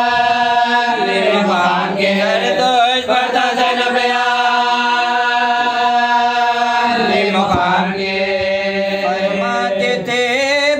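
Men's voices chanting together, unaccompanied, a mourning elegy for a martyr. They hold long drawn-out notes with slow gliding turns between them.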